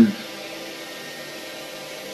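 A pause in a lecture recording: only the steady hiss of an old recording with a faint low hum, at a moderate level.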